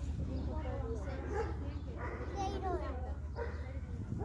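Children's voices and calls, unclear as words, over a steady low rumble.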